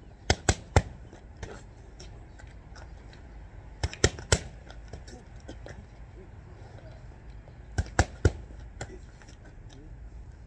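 Boxing gloves hitting focus mitts in three-punch combinations: three sharp smacks a fraction of a second apart, repeated three times about every four seconds, with a softer single hit just before the end.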